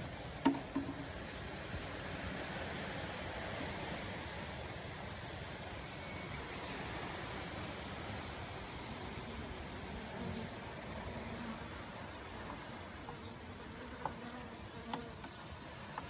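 Western honeybees buzzing steadily over the open comb frames of a hive, with a couple of light clicks about half a second in and near the end.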